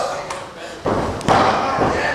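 Thuds of a wrestler striking an opponent held down on the ring mat: two sharp impacts, one a little under a second in and another about half a second later, with voices calling out over them.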